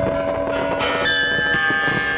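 Festive jingle of bell chimes, several ringing notes sounding together and sustained, with a new high ringing note struck about halfway through.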